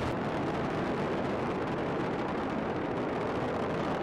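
Space Shuttle Atlantis's solid rocket boosters and three liquid-fuel main engines in climb-out after liftoff: a steady, unbroken rumbling noise, heaviest in the low end.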